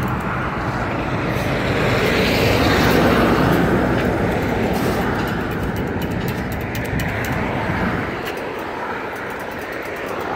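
Road traffic passing a crosswalk: a vehicle goes by, getting louder to a peak about three seconds in and then slowly fading.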